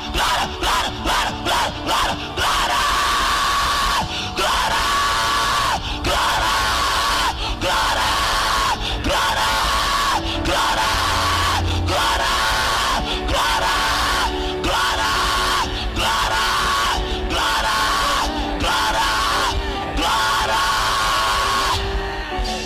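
A man shouting through a microphone over loud, continuous church music: a run of quick short cries at first, then one long cry repeated about every second and a half, each falling in pitch at its end. A crowd is heard underneath.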